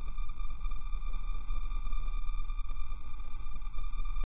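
Electronic outro music: sustained synthesizer tones held steady over a deep bass.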